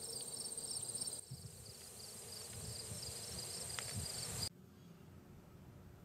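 Crickets chirping in a field: a pulsing chirp about four times a second over a steady high trill. About four and a half seconds in it cuts off suddenly, leaving faint room tone.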